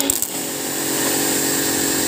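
Kärcher electric pressure washer's motor and pump kicking in just at the start and running steady and terribly noisy. The owner takes the noise for a motor bearing falling apart.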